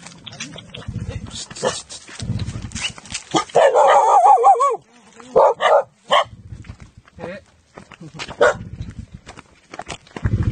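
Dog on a forest trail barking in short sharp barks, with a longer wavering whining cry about three and a half seconds in.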